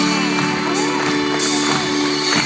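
Live band playing an instrumental intro with held chords and cymbals, while the audience cheers, whoops and whistles over the music.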